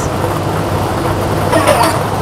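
Lottery ball draw machine running, a steady whirring mechanical noise with a constant low hum as it mixes the balls.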